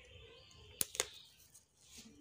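Wood fire roasting a corn cob in a clay chulha: two sharp crackles close together about a second in, over a faint background.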